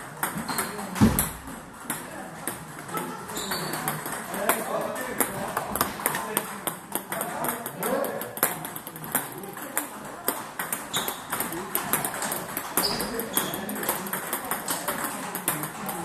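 Table tennis balls clicking off bats and tables, many quick hits from several rallies going on at once, over background voices. A heavier thump about a second in is the loudest sound.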